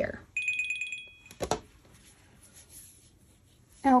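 A steady high electronic tone lasting about a second, followed shortly by a single click.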